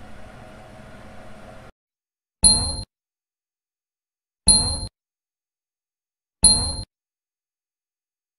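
Three short, bright electronic ding sound effects about two seconds apart, each one the same, timed with a pointer clicking the end-screen buttons. Before them, a faint steady room hum that cuts off suddenly.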